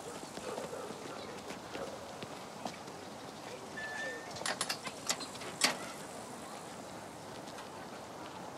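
Metal garden gate being shut and latched: a short squeak, then a quick run of sharp metallic clicks ending in a louder clack about five and a half seconds in.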